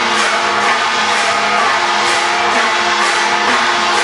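Loud traditional Chinese gong-and-drum music, with cymbals crashing over steady drumming, playing as the accompaniment to a glove-puppet show.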